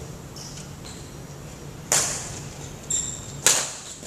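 Badminton racket strikes on a shuttlecock: two sharp hits about a second and a half apart, the second the loudest, each ringing on in a large hall. A fainter, shorter sound comes just before the second hit.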